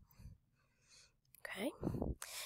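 Mostly quiet, with a faint click at the start and a soft intake of breath about a second in, then a spoken 'okay' near the end.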